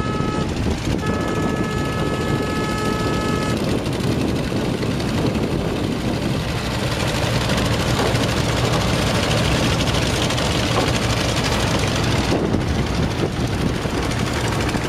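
Steady low rumble of a river ferry's engine under way, with wind and water noise. In the first few seconds a steady pitched horn-like tone sounds, breaks off briefly and sounds again.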